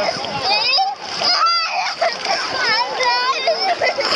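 Many overlapping voices of bathers, with children's high-pitched shouts and calls, over splashing sea water as someone wades through it.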